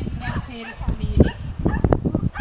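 Labrador retriever barking a few short, sharp barks, about a second in and again near the end, over people talking.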